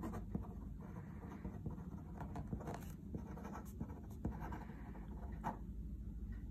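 A pen writing on paper: faint scratching strokes in two short runs, one about a second in and another after about four seconds, with a few small clicks between.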